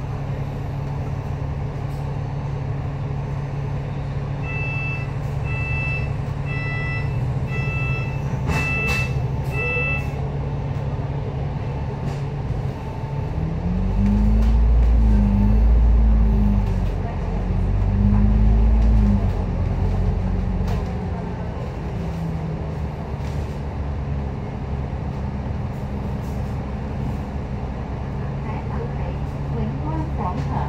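Double-decker bus at a stop sounds six warning beeps about a second apart. Its engine then runs up twice, rising and falling with the gear changes as the bus pulls away, and settles into a steady drone.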